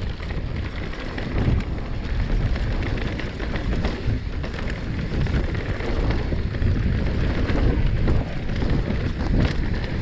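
Wind rushing over a GoPro Hero 7's microphone as a Marin Alpine Trail Carbon 2 mountain bike descends dirt singletrack at speed. Tyres roll over the dirt and the bike rattles with many small knocks, and the noise gets louder about a second in.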